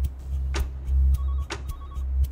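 Dramatic documentary soundtrack: a pulsing low bass drone with a sharp tick about once a second, like a clock counting down. Short electronic beeps, like a telephone ringing, repeat in the second half.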